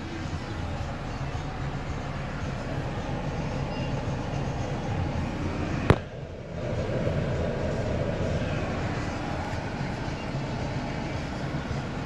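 Renault Master van's diesel engine idling steadily, heard from inside the cab as a low hum. About six seconds in there is a single sharp click and a brief dip before the hum carries on.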